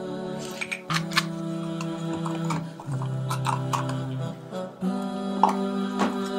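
Background vocal-only nasheed, voices holding long notes that change pitch every second or two, with a few light clicks and knocks from handling small bottles at a drawer.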